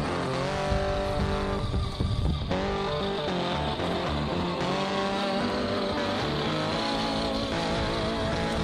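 Background track carrying car engine sounds that rev up and settle several times, over continuous music.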